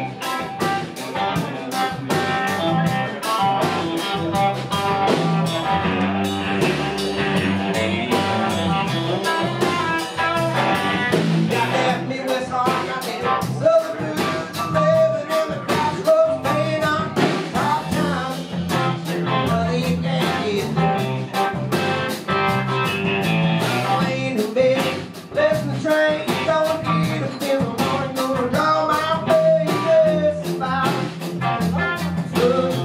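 A live blues-rock band playing: electric guitar, bass guitar and drum kit, with a male lead singer.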